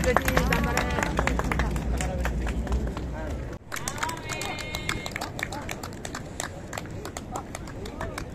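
Voices of onlookers talking, no clear words, over a steady run of sharp clicks and taps. A low rumble underneath cuts off suddenly about halfway through.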